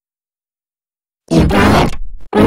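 Dead silence for over a second, then a loud, effect-processed cartoon character voice starts about a second and a half in.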